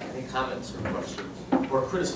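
Speech: a person starts a question with a hesitant "Or", then after a short pause begins speaking again near the end.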